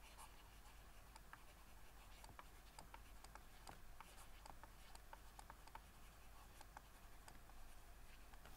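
Faint, irregular light clicks and scratching of a stylus on a drawing tablet as lines are drawn.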